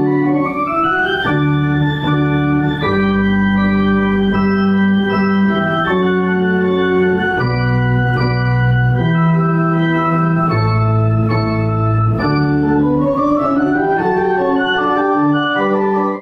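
Pipe organ playing a slow piece: sustained chords over a bass line that steps to a new note every second or two.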